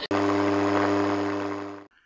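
Steady low buzz with a stack of even overtones from an AM radio receiver's output, cutting off abruptly near the end.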